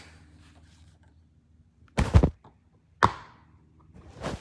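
Two dull handling thunks about a second apart, the first a quick double knock and the second sharper with a short fade, as a plastic DVD case is picked up and handled.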